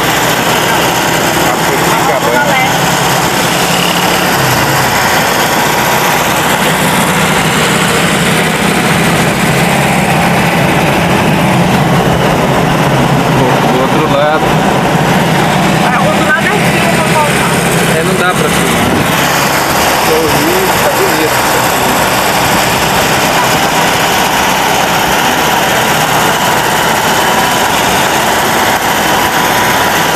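Car engine and road noise heard from inside a moving car: a steady low drone under an even rushing noise, the drone stronger for a stretch in the middle.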